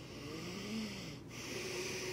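A man breathing hard in long, wheezy, hissing breaths, two of them, the second starting a little past halfway, with a faint strained groan in his voice under the first. It is his distressed reaction to the taste of a spoonful of Vegemite.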